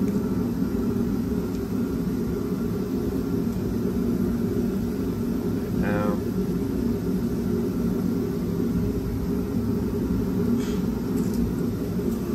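A steady low machine drone, like a fan or heater running, with no change in pitch or level.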